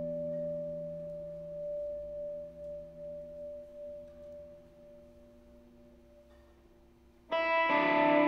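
Hollow-body electric guitar through an amp with reverb and effects: a held chord rings on and slowly fades away, then a loud new chord is struck near the end.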